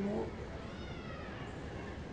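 A cat meowing faintly once in the background: one drawn-out call that rises and then falls in pitch.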